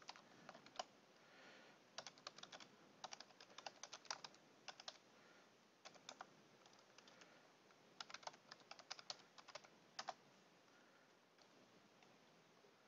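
Faint typing on a computer keyboard, in short bursts of keystrokes with pauses between them.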